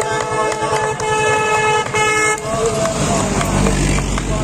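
Long, held horn-like tones over a fast low pulsing, giving way about two and a half seconds in to a deep, low rumble like a motor vehicle's engine.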